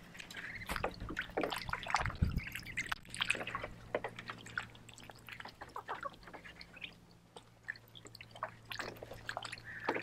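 Muscovy ducks dabbling and dunking their heads in the shallow water of a plastic kiddy pool while hunting feeder fish: small irregular splashes and drips, busiest in the first few seconds and sparser later.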